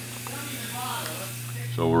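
Steady low hum under a high hiss of workshop background noise, with faint voices in the background; a man begins to speak near the end.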